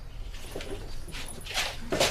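A duvet rustling and slippered feet shuffling as someone scrambles quickly out of bed, in a few bursts that grow louder in the second half.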